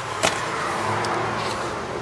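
A single sharp click about a quarter second in, then a steady, even rushing noise of movement and background while a bag is carried.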